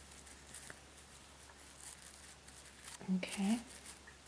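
Faint rustling and light crinkling of a tinsel pipe cleaner and fiberfill stuffing as hands push the pipe-cleaner stem down into a crocheted, stuffed doll head. A brief voice sound, like a short hum or word, about three seconds in.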